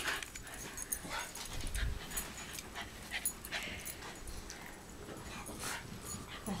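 West Highland white terriers whimpering softly and moving about close by, with scattered light clicks and scuffles.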